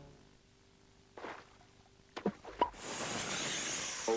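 Commercial music fading out, then a short lull broken by a brief swish, two sharp clicks with short pitched blips, and a hiss that swells up near the end: sound effects opening an animated TV spot.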